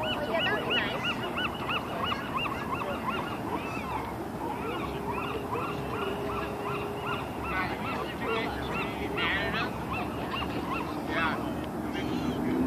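A flock of birds calling, a run of short, rapid, overlapping calls several a second, thinning in the middle and picking up again near the end.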